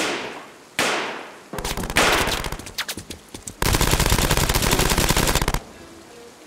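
Gunfire in a shootout: two single shots in the first second, then a run of irregular shots, then about two seconds of rapid automatic fire that cuts off suddenly near the end.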